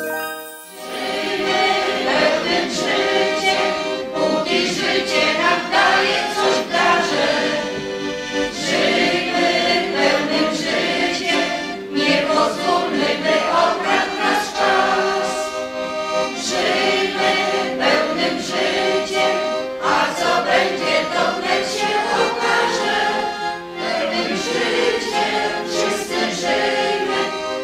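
A group of voices singing together with accordion accompaniment, starting about a second in.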